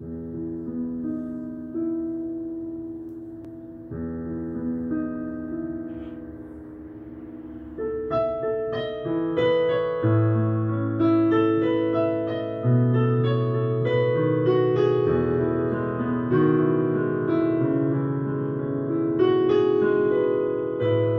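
Acoustic piano playing a slow introduction: soft held chords at first, then growing louder and busier with a higher melody from about eight seconds in.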